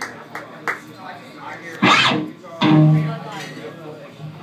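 Amplified electric guitar being played briefly between songs: a sudden loud chord about two seconds in, then a held low note, over voices chattering.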